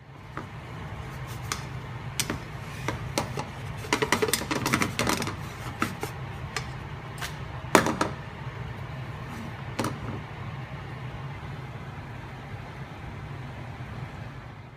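Kitchen noise around a frying pan on a gas stove: a steady low hum under a scatter of light clicks and clatters, thickest about four to five seconds in, with one louder knock about eight seconds in.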